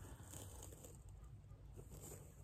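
Near silence: room tone with faint handling of a small plastic ornament and its flocked figure.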